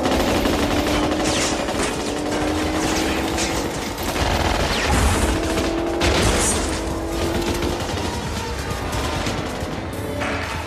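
Automatic gunfire in long, rapid bursts from a film soundtrack, mixed over action-score music.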